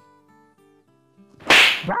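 Faint background guitar music, then about one and a half seconds in a single loud, sharp whip-crack slap sound effect that dies away within half a second.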